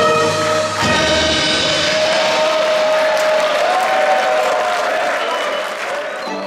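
Korean fusion gugak band ending a song: the full band with its bass cuts off about a second in, and a single held high note rings on over audience applause and cheering.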